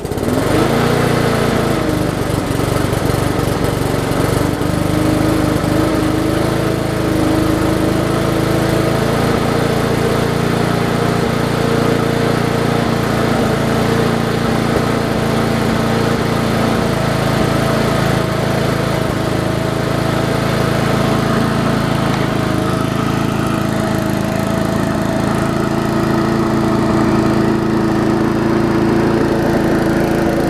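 Briggs & Stratton 3.5 hp Classic single-cylinder engine on a push mower, just caught from a pull start, its speed rising briefly in the first second, then running steadily at governed speed. It is being left to run to purge water from the fuel tank.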